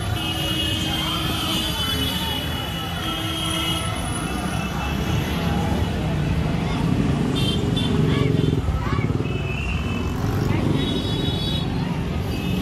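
Motorcycle and scooter engines running as they ride past in a crowded street, mixed with the voices of the crowd.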